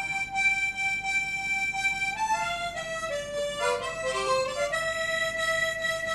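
Harmonica (mouth organ) playing a solo melody: a long held note, a short run of notes stepping downward in the middle, then another long held note.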